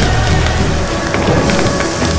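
Title-sequence sound design: a dense crackling hiss with a heavy low rumble, laid over music. The rumble thins out shortly before the end.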